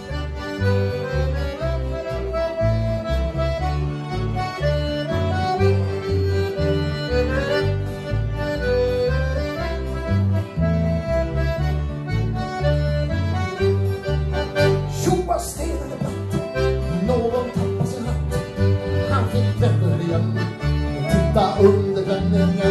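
A folk band plays an instrumental polka section. Two fiddles, a piano accordion and a diatonic button accordion (durspel) carry the melody over guitar and bass in a steady two-beat rhythm.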